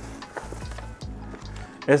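Paper grocery bag rustling as a hand rummages inside it and pulls out a carton: an irregular run of small crinkles and clicks.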